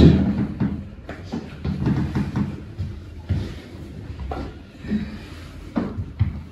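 Scattered short knocks and thumps from a patient being shifted and positioned on a padded chiropractic table, with low rustling movement noise between them.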